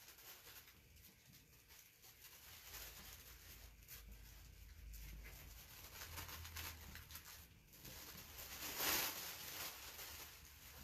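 Tissue paper rustling faintly as two sheets are handled and folded over, with one louder crinkle near the end.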